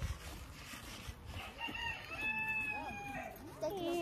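A rooster crowing once: a single drawn-out call that starts about a second and a half in and lasts nearly two seconds.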